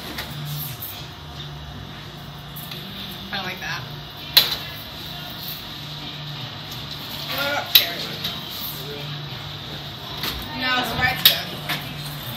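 A steady low hum with brief, quiet, indistinct voices now and then, broken by a few sharp clicks.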